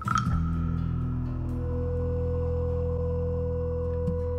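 Ambient background music. It opens with a struck, bell-like tone that fades over about a second, over a steady low drone and long held tones.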